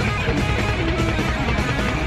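Live hard rock band music: electric guitars over bass and drums.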